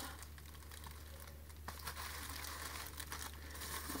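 Bubble wrap crinkling faintly as it is handled, with scattered light clicks and rustles.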